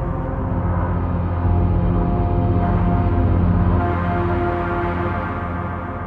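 Vienna Smart Spheres 'Waking Giants' sound-design pad played on a keyboard: stacked low, mid and high ramp layers sounding together as a sustained low drone with held higher tones above it. It fades near the end as the keys are released.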